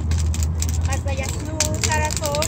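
A person's voice with rising and falling pitch, heard about a second in and again near the end, over a steady low rumble and the crackle of a burning wood bonfire.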